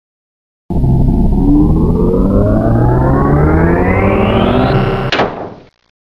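Electronic intro music: after a moment of silence, a loud, dense cluster of tones rises steadily in pitch for about four seconds, ends in a sharp sweep a little past five seconds in, and fades out quickly.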